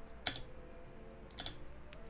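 A few faint computer keyboard keystrokes, the last two close together, over a faint steady hum.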